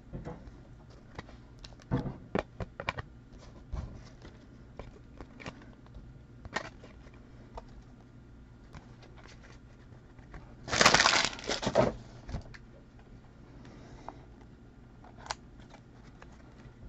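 Trading cards and packs being handled, with light scattered clicks and taps. About eleven seconds in comes a loud crinkling of a card-pack wrapper that lasts about a second.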